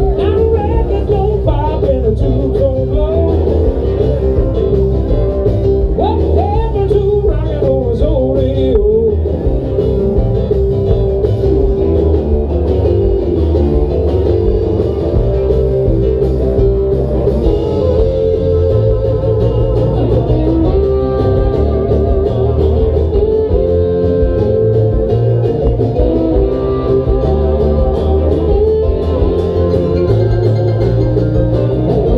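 A live band playing with singing.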